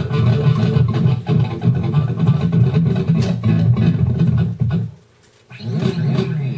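Ibanez S570DXQM electric guitar being played, a busy run of notes that stops about five seconds in.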